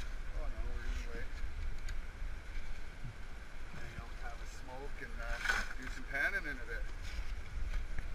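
A shovel digging into creek-bed gravel under shallow running water, sloshing and scraping with a few sharper strokes, over a steady low rumble.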